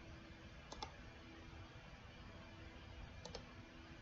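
Two quick pairs of faint clicks from a computer mouse, about a second in and again near the end, over a quiet steady room hum.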